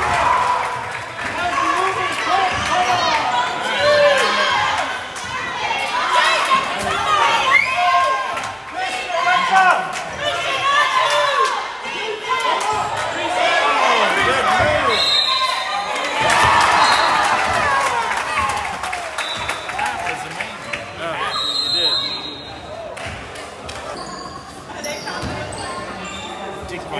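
Basketball game in a gymnasium: a ball bouncing on the hardwood court among players' and spectators' shouts and chatter, with a few short high-pitched squeaks.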